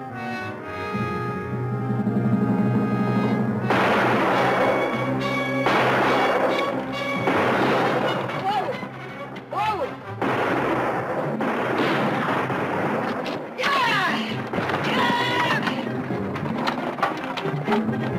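Orchestral score for a few seconds, then rapid rifle gunfire of a TV Western shootout begins about four seconds in and goes on in repeated volleys, with a few whining glides among the shots.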